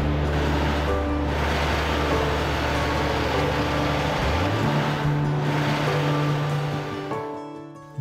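A heavy semi-truck hauling a crane on a lowboy trailer pulling away: a steady rushing engine-and-road noise whose low hum rises in pitch about four seconds in, under background music. The sound fades down near the end.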